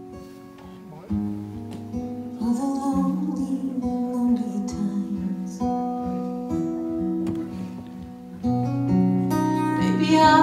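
Acoustic guitar playing slow chords of a ballad, with strums about a second in and again near the end, and a voice singing over it.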